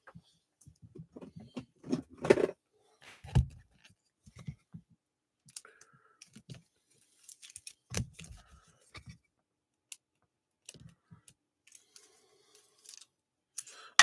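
Trading cards being handled and laid down on a cloth-covered table: scattered light taps, slides and rustles at an irregular pace.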